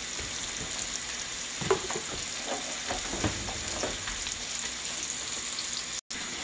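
Steady sizzle of food frying on the stove: sliced onions cooking in a skillet, with french fries frying in a saucepan of oil beside them. A few light knocks sound in the first half.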